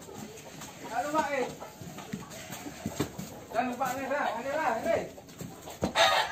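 Indistinct talk from people nearby, with a couple of sharp knocks, one about three seconds in and one just before the end.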